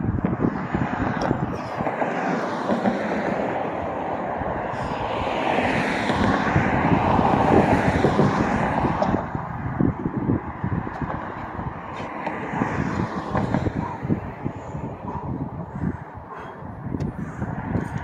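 Outdoor street noise: a passing vehicle swells to a peak a few seconds in and fades again, over a constant traffic hum and gusts of wind rumbling on the microphone.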